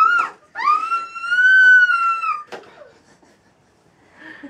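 A young child's high-pitched squealing. There is a short rising-and-falling squeal at the start, then one long held squeal of about two seconds, followed by a few faint clicks. It is a three-year-old trying out his own voice through a newly activated cochlear implant.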